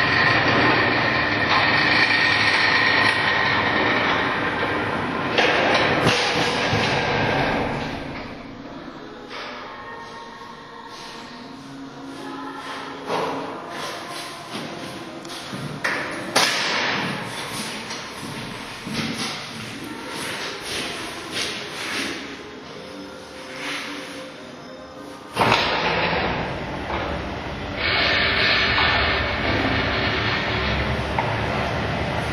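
Automatic sectional garage door running along its overhead rails, driven by a ceiling-mounted opener, with a steady rattling rumble. The rumble dies down about eight seconds in, leaving scattered knocks and clicks, then starts up again suddenly near the end.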